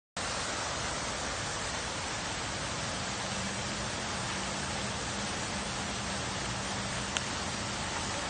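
A steady, even hiss with a single sharp click about seven seconds in.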